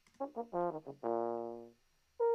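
A recorded solo euphonium part played back on its own: a few short notes, then one long held note that fades away. It is heard through a narrow EQ boost being swept through the low mids to find a honky frequency to cut.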